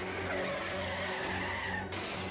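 Car tyres screeching in a skid as a dramatised accident sound effect, for about a second and a half, cutting off abruptly near the end, over low background music.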